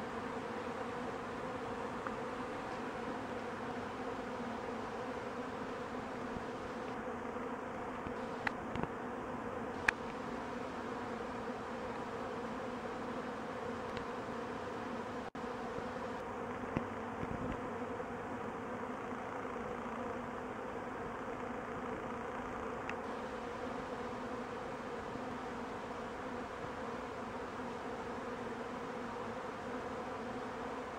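Steady, dense buzzing of a mass of honey bees flying and fighting around a hive under a robbing attack. A few short sharp clicks come about eight, ten and seventeen seconds in.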